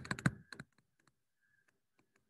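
Faint, irregular light taps and clicks of a pen stylus on a tablet screen while writing by hand, a few per second, after the last word of speech trails off.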